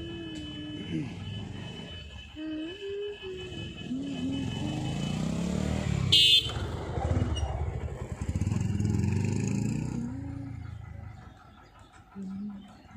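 Motor vehicle engines passing close by, swelling twice and fading near the end, with one short sharp burst about six seconds in, among people's voices.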